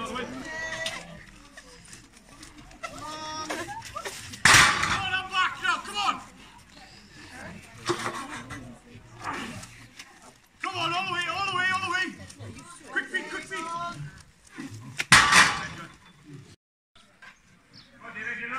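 Men shouting and calling out from the sidelines in separate loud shouts with quieter gaps between, the loudest a little after four seconds in and again about fifteen seconds in.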